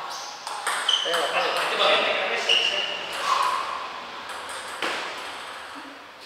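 Plastic table tennis ball bouncing a few times on the table between points, each bounce a sharp click with a short ping, with voices in the background.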